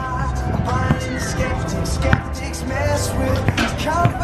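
Music playing, with basketballs bouncing on a hard court a few times.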